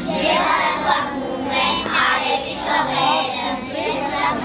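A group of young children singing a song together in Armenian, over a musical accompaniment.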